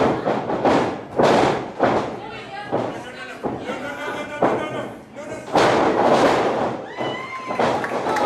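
Repeated heavy thuds and slams of wrestlers' bodies hitting the wrestling ring's canvas mat, among shouted voices.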